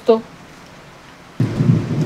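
Faint hiss, then a low rumbling noise that starts suddenly a little past halfway and carries on.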